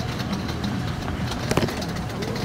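A car engine idling with a steady low rumble, and a short sharp click about one and a half seconds in.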